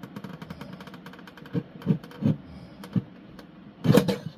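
Tabletop guillotine paper cutter being worked on printed card stock: light rapid ticking for about a second and a half, then several dull knocks, the loudest near the end.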